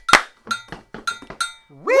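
Hand claps, the last and loudest just after the start, then three dull stomps on grass. A gankogui iron bell strikes the timeline pattern throughout. Near the end a voice slides up into a 'whee!'.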